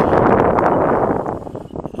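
Wind buffeting the microphone: a loud, dense rushing noise that eases off near the end.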